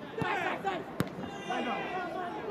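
Voices calling out from around the football pitch, with a single sharp thud about a second in, typical of a football being kicked.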